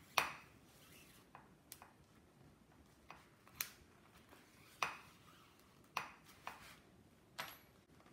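Handling of a card book cover, metal clips and needle during cord stitching: about half a dozen faint, sharp clicks and taps, spaced a second or so apart, the first just after the start the loudest.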